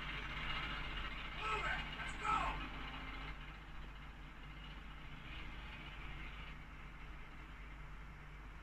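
Steady rumble and hiss like vehicles running in the background, with faint voices briefly about one and a half to two and a half seconds in.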